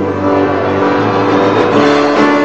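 A buzzing 'bzzz' held on one low pitch, a bee imitation, over the song's accompaniment.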